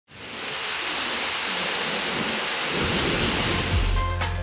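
Heavy rain in a windstorm: a dense, steady hiss of downpour, with a low rumble building over the last second.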